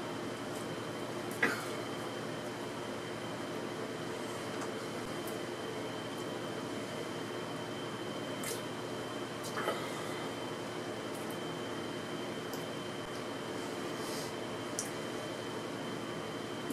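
Steady room hum with a faint high whine running through it, and a few faint short clicks scattered through it while a man drinks from an energy-drink can.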